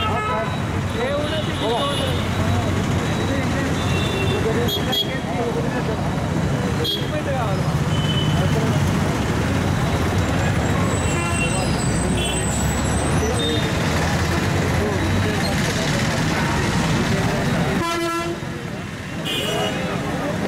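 Busy street noise: traffic running, with vehicle horns tooting now and then, over a crowd's chatter.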